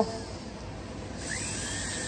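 Foredom Series SR flexible-shaft rotary tool, run from its foot pedal, starting about a second in. The burr spins up with a short rising whine and settles into a steady high-pitched whir.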